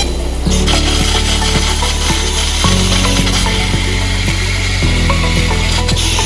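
Fiber laser cutting head slicing 8 mm carbon steel with its head tilted for a bevel cut: a steady hiss of cutting noise that sets in about half a second in. Background music with sustained bass notes that change about every two seconds plays over it.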